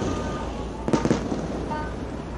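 Two sharp bangs in quick succession, a little under a second in, over a steady low rumble.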